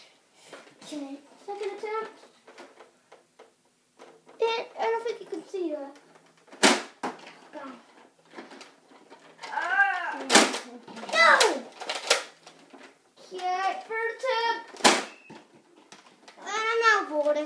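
Young children's high-pitched voices, chattering and calling out in a small room. A few sharp clicks or knocks sound through the middle and near the end.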